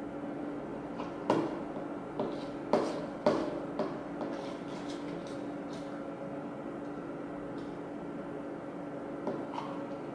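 Stirring slime (PVA glue mixed with sodium tetraborate) in a small plastic bowl: a handful of sharp knocks and clicks as the stirrer hits the bowl, bunched in the first four seconds with a couple of faint ones near the end, over a steady low hum.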